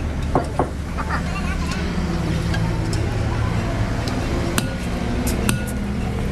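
A few sharp metallic clinks of hand tools against a truck wheel hub, two close together about half a second in and a few more near the end, over a steady low engine hum.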